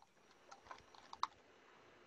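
Faint typing on a computer keyboard: a handful of keystrokes over less than a second, the last one the loudest.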